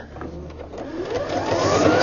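EverSewn Sparrow X sewing machine stitching. Its motor whine rises in pitch and grows louder over the first second and a half as the machine speeds up.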